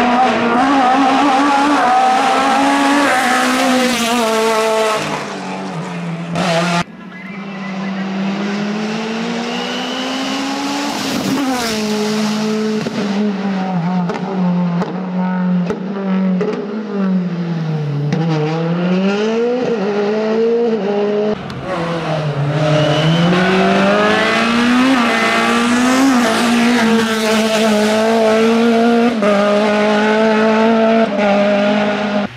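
Hill-climb race car engines at full throttle, several cars in turn. The engine note climbs repeatedly through the gears and drops on lift-off and downshifts for the bends, with an abrupt change about seven seconds in.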